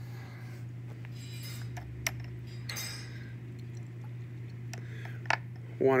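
A few small sharp clicks and clinks of glassware and a plastic squeeze bottle, with two soft rustles, as water is dripped into a test tube in a rack. A steady low hum lies underneath.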